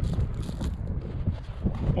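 Wind buffeting the microphone, a steady low rumble broken by scattered light knocks.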